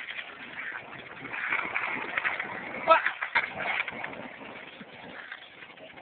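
A burning ground firework hissing and crackling with many small pops, with voices over it.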